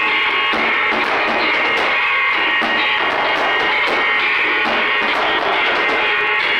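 Live noise-rock drone: a dense, loud, unbroken wall of amplified noise, with drums struck in a steady beat about twice a second.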